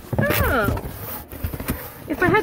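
A brief falling vocal exclamation, then the rustle and crinkle of a plastic-wrapped sheet set being turned over in the hands.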